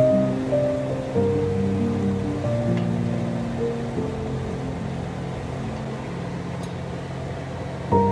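Background music of slow, held notes that grow quieter toward the end.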